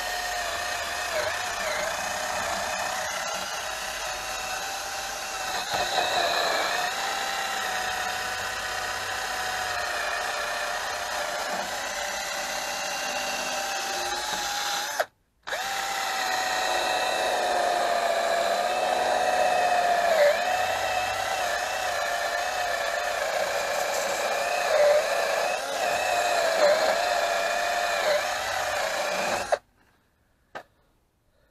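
Cordless drill spinning a wire wheel brush against a rusty rear brake drum, scrubbing off surface rust. The motor whine dips in pitch each time the brush is pressed harder onto the drum. It breaks off briefly about halfway and stops just before the end.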